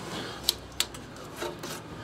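Quiet rubbing and scraping noise with a few sharp clicks, the clearest about half a second in and just before a second in.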